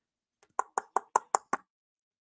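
A quick run of six sharp, evenly spaced taps, about five a second, lasting about a second.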